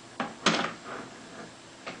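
A few sharp plastic clicks and knocks as the clips of a Beosound 3000's cover panel are pushed down with a flat-bladed screwdriver to release it. The loudest knock comes about half a second in, with a fainter click near the end.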